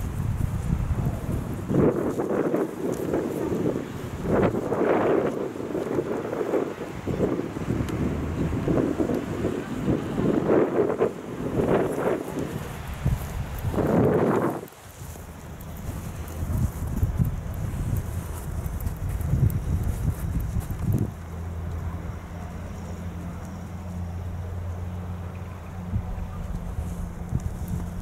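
Wind buffeting the microphone of a handheld camera carried outdoors, in irregular gusts. About halfway through it drops away suddenly to a quieter rumble, and a steady low hum sets in near the end.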